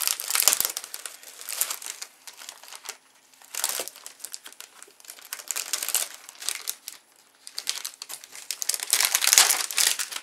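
Paper and tissue paper rustling and crinkling as items are handled and lifted in a packed gift box, in uneven bursts with short lulls, loudest near the end.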